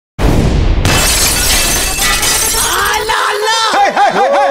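DJ mix intro sound effects. A sudden loud crash with a deep boom and a shattering noise fades over a couple of seconds. From about two and a half seconds in comes a warbling sound that swoops up and down in pitch.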